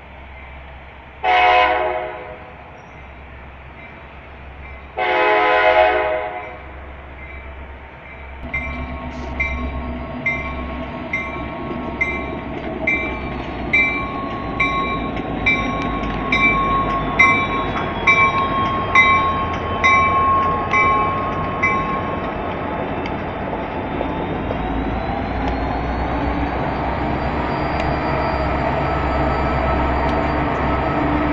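Kansas City Southern de México SD60 diesel locomotives sounding two horn blasts as they approach, then rolling close past with their engines and wheels growing louder. A regular ringing tick repeats nearly twice a second through the middle of the pass.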